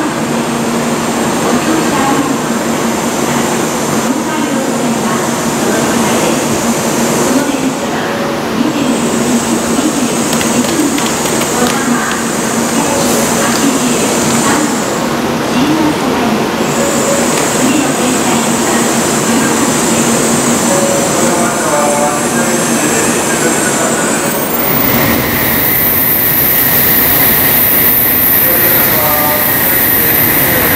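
A 700 series Shinkansen standing at the platform, its equipment running with a steady hum. About five seconds before the end, a steady high-pitched ringing starts.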